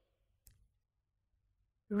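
Near silence with a single faint click about half a second in, then a woman's narrating voice starts just before the end.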